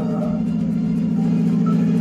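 A steady low-pitched hum with a fine buzz, holding flat without change.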